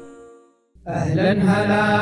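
The earlier sound fades into a brief silence. About three-quarters of a second in, a voice starts chanting a long, held melodic line, a vocal chant in the style of an Arabic nasheed.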